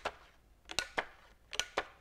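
Handheld hole punch punching holes through construction paper: several sharp clicks, some in quick pairs.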